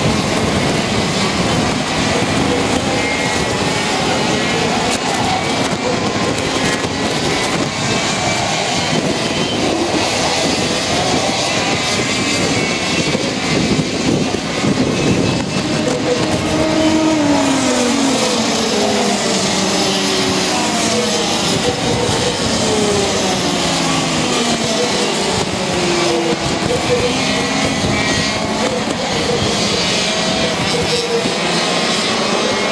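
Racing kart engines running on a circuit, several heard at once, their pitch rising and falling as they accelerate out of and slow into corners.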